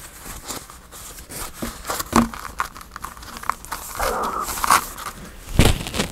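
Stack of folded paper journal signatures rustling and crinkling as the pages are handled and leafed through by hand, with a louder knock near the end.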